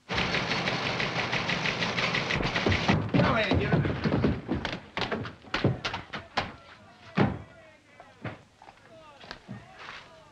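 A sudden burst of loud commotion, voices and clatter together, from people scuffling on a wooden staircase, followed by a run of sharp knocks and thuds, several a second, that thin out after about seven seconds into quieter sounds with faint voices.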